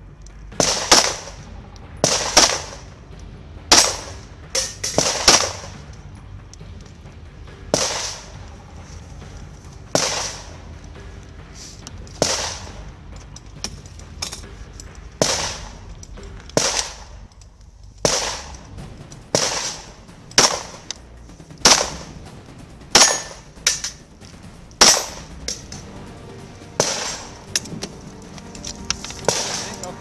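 Gunshots fired one after another, about twenty in all, at uneven gaps of one to two seconds with a few quick pairs. Each shot is followed by a short ringing echo.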